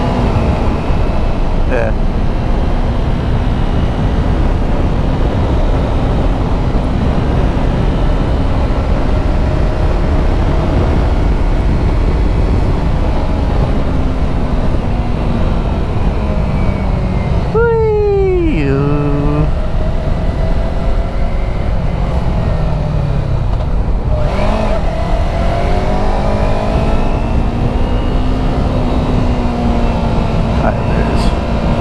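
Yamaha YZF-R3 parallel-twin engine under way, heard from on the bike through heavy wind rush on the microphone. The engine note sinks gradually, drops sharply about eighteen seconds in, then climbs again from about twenty-four seconds as the bike accelerates.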